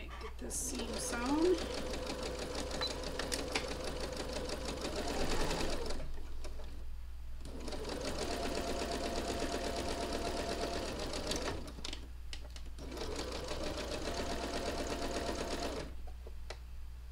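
Electric sewing machine stitching in three runs of several seconds each, with short pauses about six and twelve seconds in. This is machine piecing of quilt block seams.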